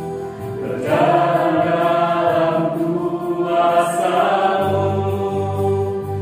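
Mixed group of voices singing a slow Christian praise song in long held phrases, with electronic keyboard accompaniment. A low sustained bass note comes in near the end.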